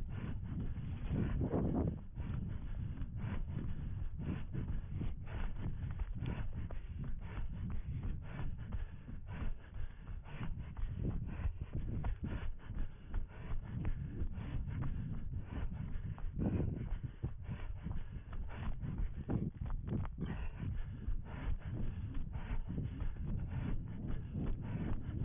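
Running footfalls crunching through dry grass and leaf litter, with brush rubbing past, in a steady stream of short knocks over a continuous low rumble from movement on a head-mounted camera microphone.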